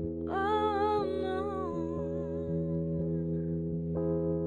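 A woman's wordless sung vocal line, hummed or sung on a vowel with vibrato, comes in about a third of a second in and fades after about three seconds. Steady held accompaniment chords sound under it.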